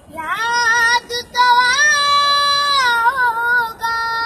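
A high-pitched voice singing or wailing in long held notes. It rises into the first note, breaks off briefly about a second in, then holds one long steady note before wavering and carrying on to the end.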